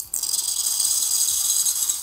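Steam wand of a De'Longhi Dedica espresso machine purging into a glass jug: a loud, steady hiss of steam and spitting water as the steam knob is opened, stopping after about two seconds when it is closed. It is the purge of condensed water from the wand once the boiler has reached steam temperature, before frothing milk.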